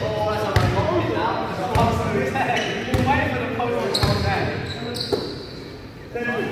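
Basketball dribbled on a sports hall floor, a bounce about once a second, with players' voices in the hall.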